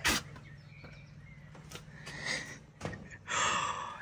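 A sharp click as the handle and latch of a metal door are worked, then a loud gasp, a quick intake of breath, near the end.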